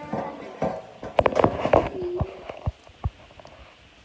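Handling noise from a smartphone being picked up: a quick cluster of knocks and clacks a little after a second in, then a couple of single bumps near three seconds.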